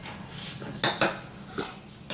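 Metal spoon knocking twice against a seasoning container, two sharp clinks in quick succession about a second in, after a brief scrape.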